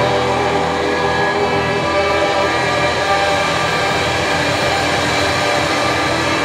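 Live rock band holding a loud, steady droning wash of distorted electric guitars, bass and cymbals, with no singing.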